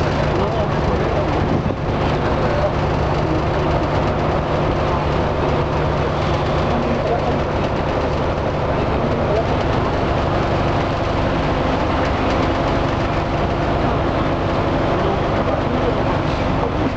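A ferry's engine running steadily, a low, even drone, with voices talking in the background.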